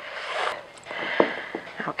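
Heavy breathing picked up close on a chest-worn microphone, two long breaths one after the other, with a few light knocks of a wooden spoon stirring stiff flour-and-water dough in a stainless steel bowl.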